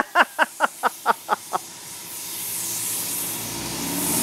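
A man laughing in quick, even bursts for about a second and a half, then the hiss of a compressed-air paint spray gun building up and running steadily as it sprays black enamel onto a car body.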